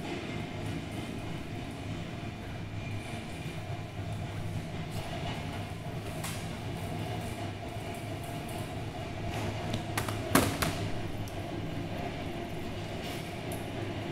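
Subway train running, a steady rumble with a held tone, played as part of the performance's soundscape; a single sharp clack stands out about ten seconds in.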